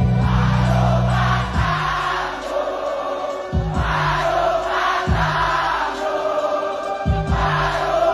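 Live rock band holding a loud chord that stops about a second and a half in; then a large crowd sings along in phrases, punctuated by a bass drum hit and a short bass note about every one and a half to two seconds.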